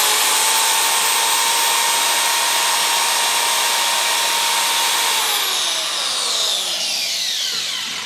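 Handheld 5-inch electric marble cutter running free with no load: its motor has just spun up and runs at full speed with a steady high whine. About five seconds in it is switched off and winds down, the whine falling in pitch until it has nearly stopped near the end.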